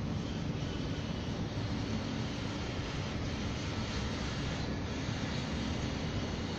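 Steady low rumble of outdoor urban background noise, unchanging throughout with no distinct events.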